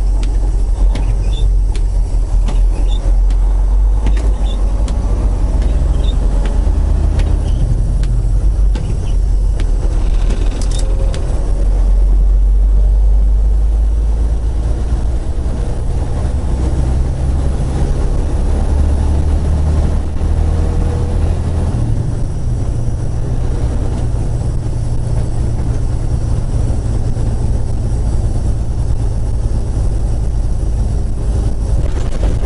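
Semi truck's diesel engine running while driving, heard from inside the cab: a steady low rumble whose pitch steps up and down a few times in the second half, with a few faint ticks and one sharp click.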